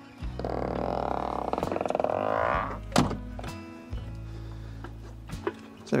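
Camper's back door being swung shut: a long creak, about two seconds, rising in pitch, then a single sharp thunk as the door closes about three seconds in. Background music plays underneath.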